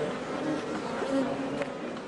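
Many honeybees buzzing around a colony that is being split by hand, in a steady, wavering hum.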